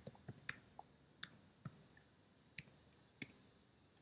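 Computer keyboard being typed on: about ten faint, separate key clicks at an uneven pace.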